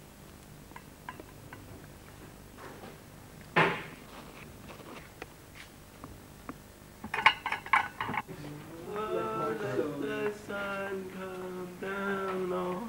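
Small objects handled on a desk: a single sharp knock a few seconds in, then a quick run of bright metallic clinks from tins knocked together around seven seconds. Over the last few seconds a voice sings long held notes.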